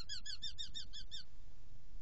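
Eurasian hobby calling a fast series of short, falling 'kew' notes, about eight a second, which stop a little over a second in. A steady low rumble lies beneath.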